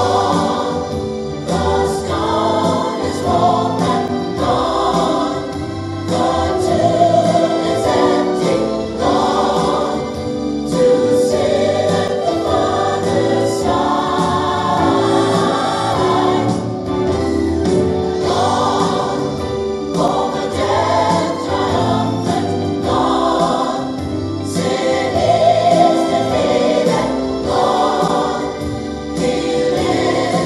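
Recorded gospel choir music: a choir singing in long, held phrases without a break.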